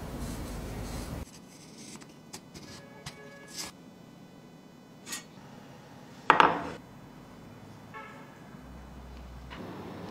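Light scrapes and small knocks of marking tools on a wooden block: a steel square laid against the wood and a marker pen drawing lines. One louder, sharp knock comes just past the middle.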